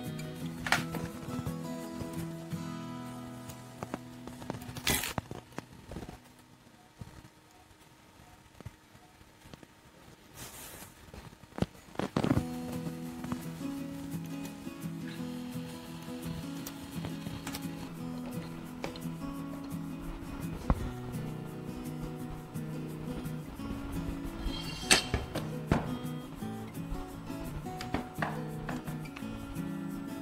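Background music, with a few sharp clicks and knocks of parts being handled as a spray nozzle is fitted to a drone arm.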